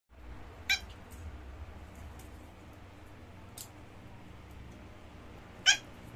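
Two short, high-pitched squeals from a young pet, about five seconds apart, as it is pawed at by a dog while hiding under a bed.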